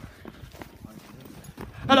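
Footsteps of a person walking on a woodland dirt path: a string of faint, short steps, with a voice starting to speak near the end.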